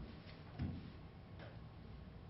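Quiet stage room tone with a soft low thump about half a second in and a few faint clicks.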